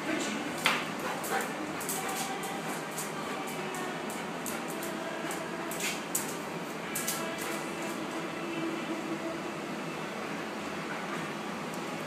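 A dog's claws clicking on a tiled floor as it moves about, in irregular light ticks that come thickest near the start and again about halfway through, over a low background murmur.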